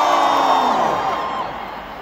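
A long held note over the PA, fading out about one and a half seconds in, over a cheering rock-concert crowd.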